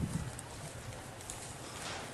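Footsteps on dry ground with camera-handling knocks, a low thump right at the start followed by faint irregular clicks and rustle.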